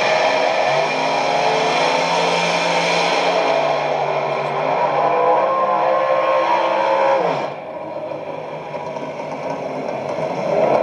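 Drag race cars' engines at full throttle down the strip, rising slowly in pitch. About seven seconds in, the engine note drops sharply as the throttle is lifted at the end of the run. Heard through a television's speaker.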